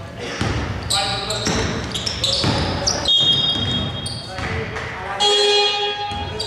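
A basketball bouncing on a hardwood court: a few irregular thuds ringing in a large hall, mixed with players' voices and short high squeaks.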